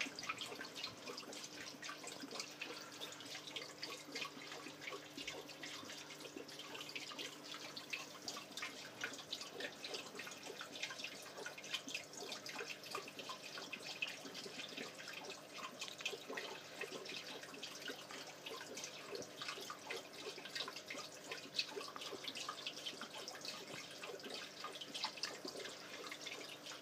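Water trickling and dripping steadily in an aquarium, a continuous patter of small splashes, with a faint steady hum underneath.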